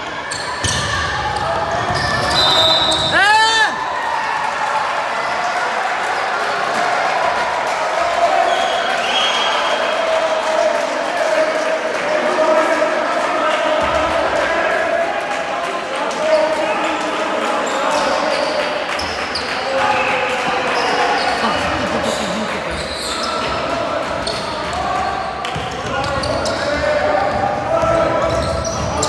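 Indoor basketball game in a large, echoing gym: a ball bouncing on a hardwood court amid the constant overlapping voices of players and spectators. A short, high whistle tone sounds a few seconds in and another near nine seconds.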